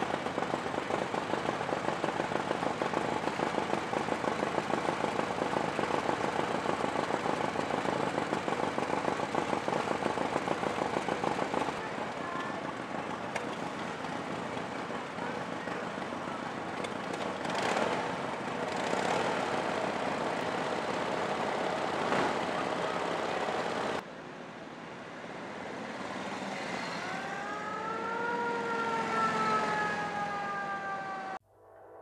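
Antique motorcycle engines running, with a close, fast, even firing pulse from a vintage V-twin. Near the end one motorcycle pulls away, its engine pitch rising and then falling as it goes.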